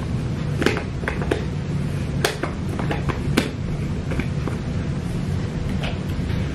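A handful of short, sharp clicks and taps from a jar of loose setting powder being handled and its lid closed, over a steady low room hum.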